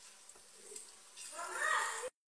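Onions and ginger-garlic paste frying in oil in a clay pot, a faint steady sizzle. A voice is heard briefly near the end.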